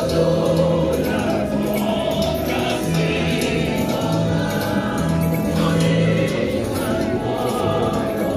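A choir singing over instrumental accompaniment, with held low bass notes that change about every second.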